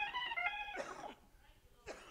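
Faint held tones fading out over the first second, then a man's short cough near the end.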